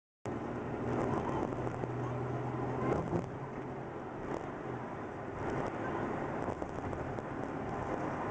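Steady road and tyre noise of a moving car heard inside the cabin, with a low engine hum that fades about three seconds in.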